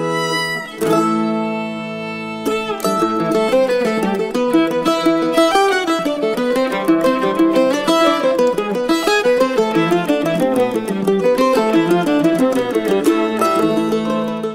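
Lively instrumental string music: a fiddle tune with plucked-string accompaniment, fast notes over a held low drone.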